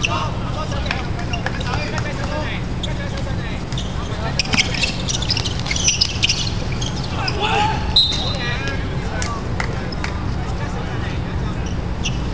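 Handball players shouting and calling to each other during play, with scattered knocks of the ball and feet on the court over a steady low rumble. A short high whistle blast comes about eight seconds in.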